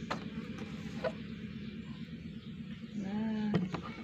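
Quiet room tone with two light clicks, one at the start and one about a second in, as a plastic plate is handled; near the end a woman's voice makes a short drawn-out sound.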